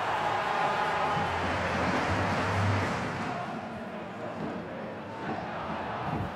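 Football stadium crowd cheering a penalty goal, loudest in the first three seconds, then settling into a lower steady crowd noise.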